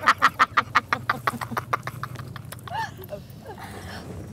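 A woman laughing hard, a fast run of breathy 'ha' pulses that die away over the first two and a half seconds, with a short voiced breath near the end of it, over a low steady hum.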